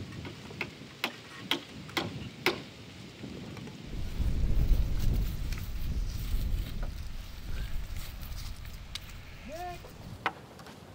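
Five sharp knocks about half a second apart, a mallet striking timber as the frame is worked, followed from about four seconds in by a loud low rumble that gradually eases.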